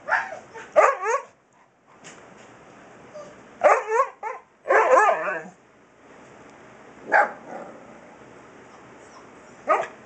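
Husky puppy vocalizing in several short bursts of yips and barks with wavering, howl-like husky 'talking'; the longest call lasts about a second near the middle.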